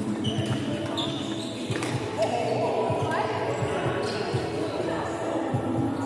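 A badminton doubles rally on a wooden court: many short footstep thumps, sneaker squeaks and sharp racket hits on the shuttlecock, with players' voices in the hall.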